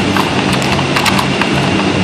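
Irregular hard plastic clicks and clacks, several a second, as a whippet puppy noses and paws the sliding pieces and pegs of a plastic puzzle feeder, over a steady low hum.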